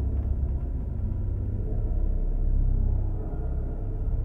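A low, steady rumbling drone, its weight in the deep bass, with no speech over it.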